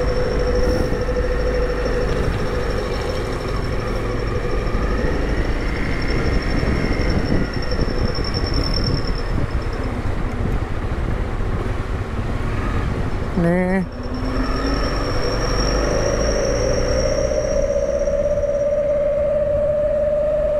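Motorcycle being ridden, its engine running under a heavy wind rumble on the microphone, with a steady whine that drops out briefly about two-thirds of the way through.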